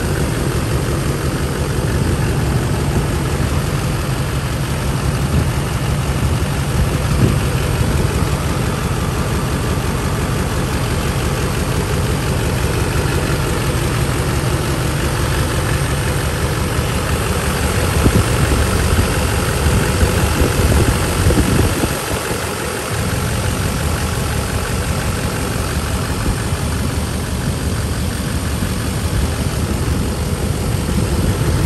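Duramax LBZ 6.6 L V8 turbodiesel idling steadily, heard up close with the hood open.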